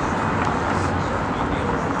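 Downtown street ambience: a steady wash of traffic noise with a constant low hum underneath.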